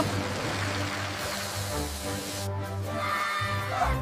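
Cartoon background music with a steady beat over the rushing hiss of water spraying hard from a hose.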